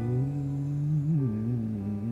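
A man singing one long, low held note that bends briefly about a second in and wavers after that.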